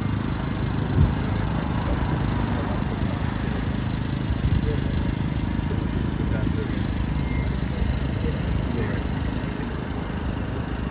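A man talking outdoors, partly drowned by a steady low rumble of street traffic, with one thump about a second in.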